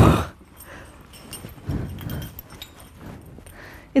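A brief vocal exclamation at the very start, then the rustle and small clicks of a firefighter's heavy belt and gear being handled and put on.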